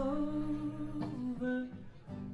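Women's voices holding long wordless sung notes in harmony, humming-like, with a quiet acoustic guitar and bass guitar underneath. The held note breaks about a second in and a new one is taken up, fading near the end.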